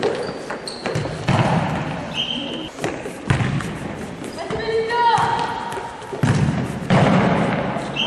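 Futsal ball being kicked and bouncing on a wooden sports-hall floor, a string of sharp thuds ringing in the hall, with short high shoe squeaks and players' voices.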